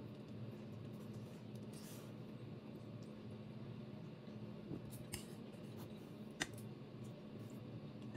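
Metal knife and fork scraping and clicking softly against a ceramic plate a few times while cutting and picking up food, over a steady low hum.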